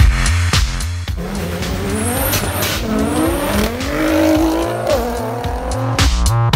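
Drag-racing car's engine at full throttle, its pitch climbing, dropping at gear changes and climbing again, heard over electronic music with a steady beat.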